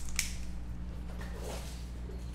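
Faint handling noises of a glass hot sauce bottle being opened: one click just after the start, then soft scattered rustles, over a steady low electrical hum.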